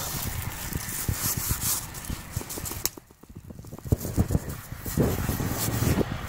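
Irregular crackling and rustling of dry leaves with small knocks, dipping briefly quieter about halfway through.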